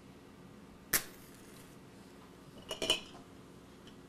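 A single sharp click about a second in, then near the end a short scratch and flare of a wooden match being struck on its box.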